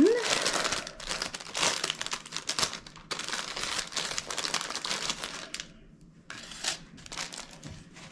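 Plastic packaging crinkling and rustling as it is handled and opened. The rustle is busy for about five and a half seconds, then comes in a few short bursts.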